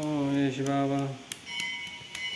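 A man holds one long, steady chanted note through the first second, then a metal bell is struck and rings for about a second with a bright, clear tone.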